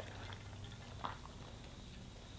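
Faint sipping of water from the spout of an insulated water bottle, with a small click about a second in.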